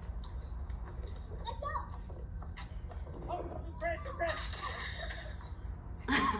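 Outdoor home-video soundtrack: a steady low rumble with faint voices of a man and young children, and a brief wider noisy rush a little after four seconds in.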